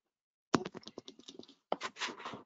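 Rapid typing on a computer keyboard: a quick run of keystroke clicks starting about half a second in, a brief pause, then more keystrokes near the end.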